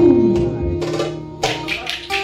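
Ankara oyun havası folk dance music: a held note fades out, then wooden spoons (kaşık) clack a few times in the lull before the band comes back in about one and a half seconds in.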